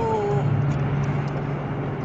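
A man's sung note held and trailing off about half a second in, then a steady low car engine drone with road-noise hiss, heard from inside the car.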